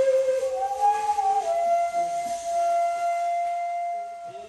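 Daegeum, the large Korean bamboo transverse flute, playing a slow solo melody: a couple of short notes moving up and down, then one long, steady held note with audible breath that stops at the end.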